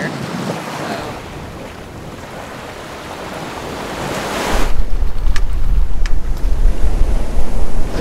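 Wind and choppy water rushing past a sailboat under way. From about four and a half seconds in, heavy wind buffets the microphone with a loud, uneven low rumble.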